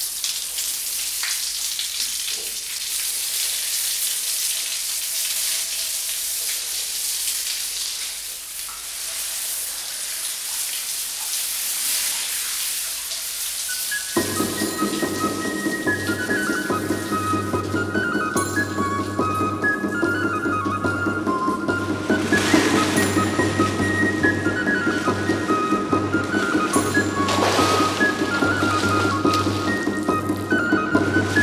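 Steady hiss of a shower's spray of water. About halfway through, music comes in: a melody of high held notes over a low droning pulse.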